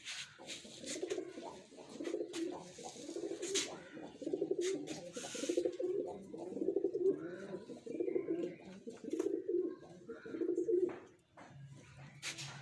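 Domestic pigeons cooing, one throaty coo after another with a rapid pulsing in each, stopping shortly before the end. A few brief scuffing noises come between the coos in the first half.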